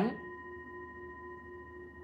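A singing bowl ringing with a sustained, steady tone: a low note with a few clear higher overtones held evenly, fairly quiet.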